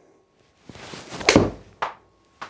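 A golf club swishing through the downswing and striking a ball off a hitting mat with a sharp crack, about a second and a third in. About half a second later the ball hits the simulator's projection screen with a second, shorter smack.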